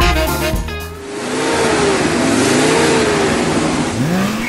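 A car driving at speed: its engine note rises and falls over a steady rush of wind and tyre noise, taking over as background music cuts off about a second in.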